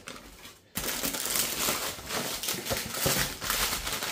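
Plastic food packaging crinkling and rustling as bags of frozen chicken and naan are handled and pulled out of a cardboard box, starting about a second in.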